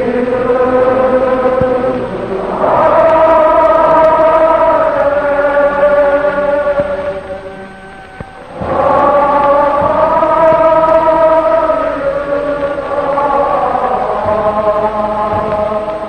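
Slow choral chanting: long held, slowly gliding sung notes in two phrases, with a brief drop in loudness between them about eight seconds in.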